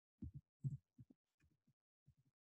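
Faint soft knocks and taps of computer keyboard keys and a mouse, about eight in two seconds, as a block of code is copied and pasted.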